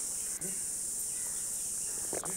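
Steady high-pitched drone of insects, with one brief break about half a second in.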